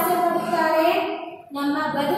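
A woman singing a Kannada poem to a simple tune, holding long notes, with a brief breath pause about one and a half seconds in.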